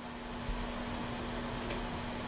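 Room tone: a steady hum at one pitch over a low hiss, with one faint click near the end.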